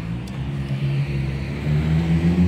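Road traffic: a car engine's steady hum on the street close by, growing louder near the end.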